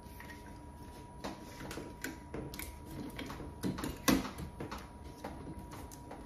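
Light clicks and knocks of a metal door handleset being fitted and handled against the door. The sharpest click comes about four seconds in.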